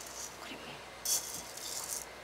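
Buckwheat grains poured from a small bowl into the feed hole of a stone hand mill: a soft hissing patter of grain, loudest about a second in.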